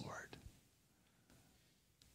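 Near silence: the last spoken word fades out in the first half-second, then faint room tone.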